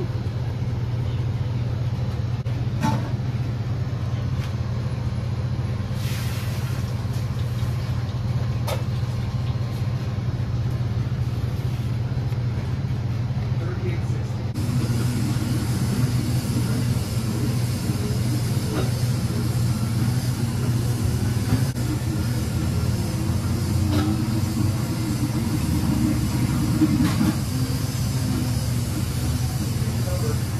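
Steady low machine hum of kitchen equipment, with faint background voices and a few light clicks. About halfway through the sound turns fuller and hissier.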